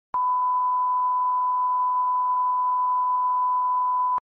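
A steady single-pitch 1 kHz line-up test tone, the reference tone that goes with colour bars. It switches on with a click just after the start and holds at one constant level and pitch.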